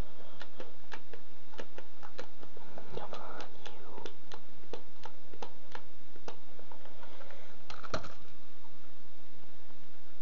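Irregular light clicks and taps of objects being handled close to the microphone, over a steady low hum, with a faint voice murmuring briefly about three seconds in and again near eight seconds.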